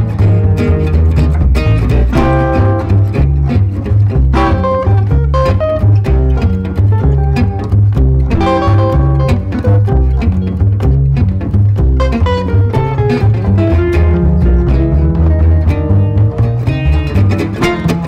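Jazz manouche trio playing: two gypsy-jazz acoustic guitars, one playing single-note melody lines over the other's strummed chords, with a double bass plucked in a walking line underneath.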